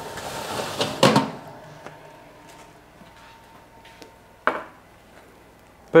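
Metal oven rack and baking tray being handled in a home oven: a short hiss, then a sharp metallic knock about a second in, a few light clicks, and another knock near the end.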